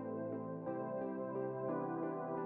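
Soft ambient background music of sustained chords that change about once a second.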